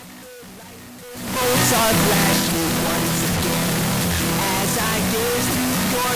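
Null-test residue from phase-inverting a 24-bit render of a song against its 64-bit render: a faint, fuzzy ghost of the music that jumps much louder about a second in, as the master is boosted to around +19 dB. It becomes a wash of hiss with the song's tones still audible underneath. The leftover is the error of 24-bit fixed-point processing, "imprecise math".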